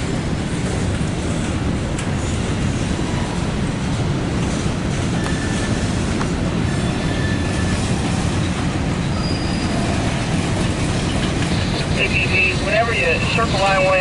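Freight cars of a CSX mixed freight train rolling past, a steady rumble of wheels on rail, with a few faint high wheel squeals midway.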